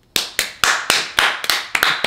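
Two people clapping their hands, a brisk, slightly uneven run of sharp claps at roughly four a second.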